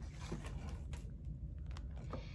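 Faint handling of a paper tea bag and its cardboard box: a few light ticks and rustles over a low, steady room hum.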